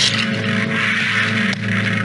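Film soundtrack effects: a steady low drone runs under a hissing noise that swells about half a second in and fades by about a second and a half.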